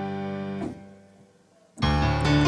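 Piano patch of a Roland Fantom (2001) workstation synthesizer: a held chord is let go about two-thirds of a second in and dies away to near silence, then a new chord is struck near the end.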